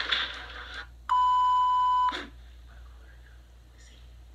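A single steady electronic beep, a pure tone about a second long, starting about a second in, after a moment of speech.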